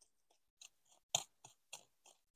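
Three-pronged hand cultivator scratching into soil and weed roots: about four faint, short crunchy scrapes, the sharpest a little past the middle.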